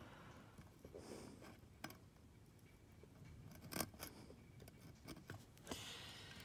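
Faint clicks and small scrapes of fine metal tweezers handling a copper wire lead as it is pushed into a circuit-board hole. The sharpest clicks come as a close pair about four seconds in.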